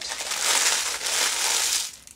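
Metallised plastic crisp wrapper being crumpled and squashed in the hands: a continuous crackly crinkling that stops just before the end. The wrapper is likely high-content plastic rather than paper.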